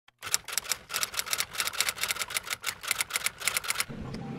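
Rapid typing: a fast, uneven run of sharp key clicks, about seven a second, that stops just before the end.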